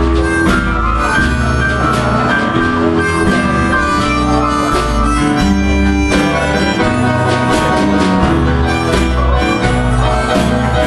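Live acoustic band playing a slow blues tune, with harmonica carrying the melody over strummed acoustic guitar and plucked upright bass.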